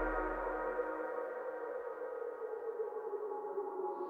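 Electronic music: a sustained synthesizer chord slowly fading out, its deep bass dying away within the first second.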